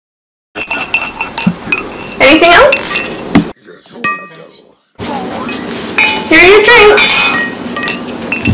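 Glasses and dishes clinking amid indistinct voices, in two stretches with a quieter gap in the middle.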